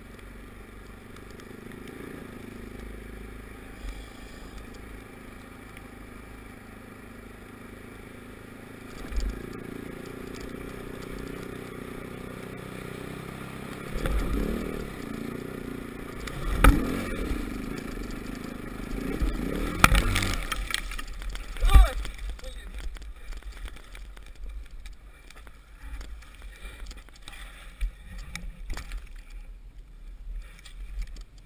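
Dirt bike engine running steadily while riding over snow, then loud thumps and engine surges from about halfway as the bike breaks through the ice. After that the engine stops, leaving only faint irregular knocks of broken ice.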